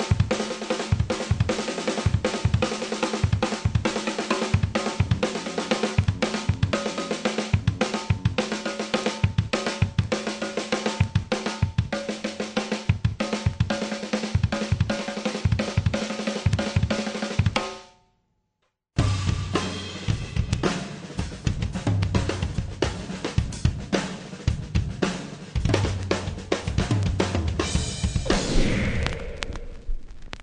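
Drum kit playing a fast unison pattern split between snare drum and double kick drums, in groups of two on the snare, two on the kicks, six on the snare and two on the kicks, with cymbals. The playing stops dead for about a second some eighteen seconds in, then starts again with heavier bass drum.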